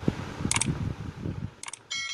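Sound effects of a subscribe-button animation: a low rattling noise with a click about half a second in and another near the end, as the cursor presses the buttons, then a bell ding starting right at the end.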